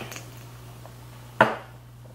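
A single short, sharp click about one and a half seconds in, over a steady low hum.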